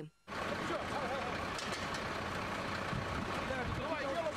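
A stuck Mercedes-Benz box truck's engine running under load in deep snow, a dense steady noise that starts about a quarter second in. Men's voices are heard faintly over it as they push the truck.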